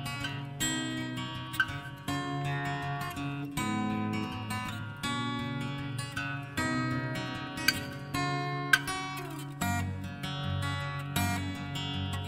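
Solo acoustic guitar background music, a new chord struck every half second to a second in an even, unhurried rhythm.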